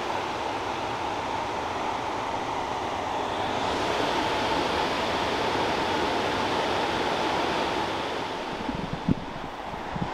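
Steady rush of white water pouring over a river's falls and rapids, growing louder a few seconds in and easing off near the end, with a soft low thump shortly before it ends.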